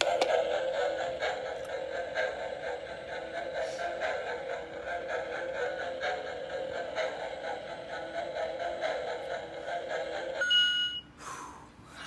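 Electronic lie-detector shock toy playing its busy electronic analysing sound for about ten seconds, then a short clean beep as it gives its verdict. Its green light, which marks the answer as true, follows.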